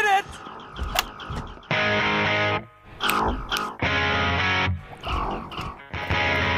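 Rock music: loud distorted electric guitar chords struck and held in short blocks, two of them about two seconds apart, with a voice heard in the gaps between them.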